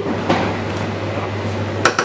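Kitchen knife sawing through a crisp craquelin-topped choux puff, with one sharp click near the end as the blade meets the hard surface below.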